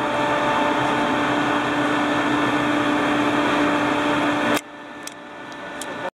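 Steady whirring machinery hum aboard a ship, with a low steady tone in it. It cuts off suddenly about four and a half seconds in, leaving a quieter background with a few faint clicks.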